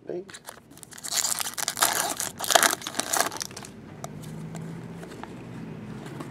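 Foil wrapper of a trading-card pack being torn open and crinkled by hand. There are crackly bursts for about two seconds, starting about a second in.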